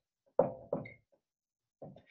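Dry-erase marker writing and underlining on a whiteboard, making a few short knocking strokes against the board. The loudest comes about half a second in, and a brief squeak of the marker tip follows near one second.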